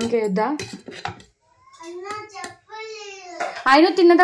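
A child talking in several short phrases, high-pitched, with a few light clinks of dishes.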